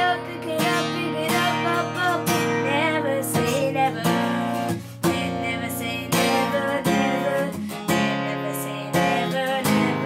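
Acoustic guitar strummed in a steady rhythm, with a boy's voice singing along at times.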